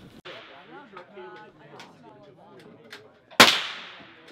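A single rifle shot about three and a half seconds in, sharp and loud, with a short decaying echo. Faint talking comes before it.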